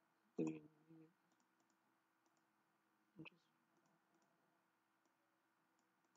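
Sparse computer-mouse clicks, mostly faint, with one sharper click a little after three seconds in. There is a brief voiced murmur near the start.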